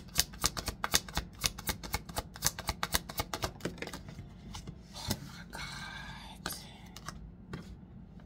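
A deck of tarot cards being shuffled by hand: a rapid run of crisp card-on-card clicks for the first few seconds, then a softer rustle of cards sliding together, with a few last taps near the end.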